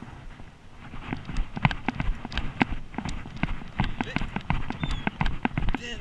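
Quick footsteps on a concrete pier deck, about three a second, as someone hurries along it. The steps start about a second in.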